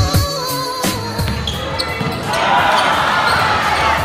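Background music with a heavy beat and deep bass, thinning out about a second in, then a swelling rush of noise from about halfway through that carries into the next section of the track.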